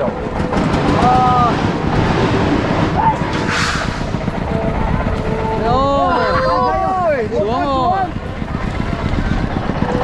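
Flute kites (sáo diều) sounding a faint steady hum overhead under heavy wind rumble on the microphone. Voices call out briefly near the start and again around the middle.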